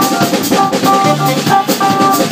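Jazz quartet playing live: a drum kit with bass drum and snare keeping a steady groove under electric bass, with saxophone and keyboard. A short riff of high notes repeats over the beat.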